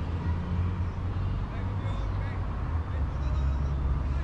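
Distant calls and shouts of football players across the pitch over a steady low rumble.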